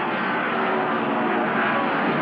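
NASCAR Winston Cup stock cars' V8 engines running at speed, a steady loud drone.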